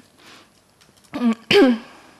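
A woman clearing her throat once, about a second and a half in, after a brief quiet pause.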